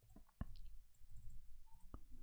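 A few faint computer mouse clicks, the clearest about half a second in and another near the end, over a faint low hum.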